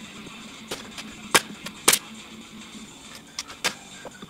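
Pneumatic nail gun firing into lumber: two loud shots about half a second apart a little over a second in, with lighter shots and knocks around them, over a steady hum.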